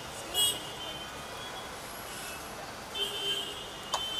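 Street traffic with short, high-pitched vehicle horn blasts: a loud one about half a second in and another around three seconds in, over a steady background of traffic and voices.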